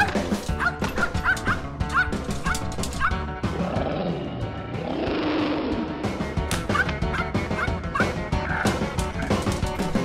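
Cartoon dog giving runs of short, upward-sliding yips, about two a second, in two spells with a gap in the middle, over lively background music. A rushing noise fills the gap between the spells.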